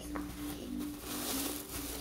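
Thin plastic bag rustling and crinkling as it is handled and pulled out of a fabric backpack.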